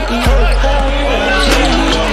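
Background music track with a heavy bass line, a regular thumping beat and vocals.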